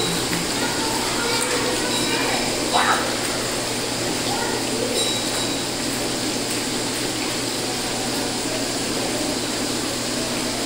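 Steady rush of running and splashing water from a water play table with a vortex cylinder, with children's voices faintly over it.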